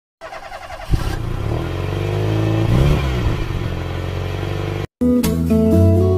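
A vehicle engine running, rising and falling in pitch about three seconds in as if passing by. It cuts off just before five seconds, and strummed acoustic guitar music starts.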